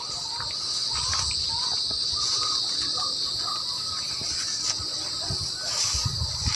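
Steady, high-pitched insect chorus of field crickets, with faint low background noise.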